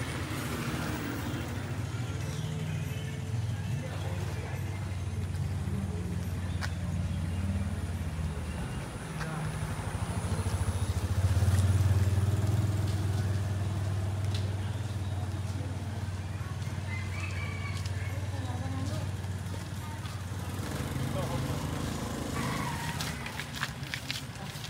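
Street traffic: a steady low engine rumble from motor scooters and cars, swelling as a vehicle passes close about halfway through, then easing off.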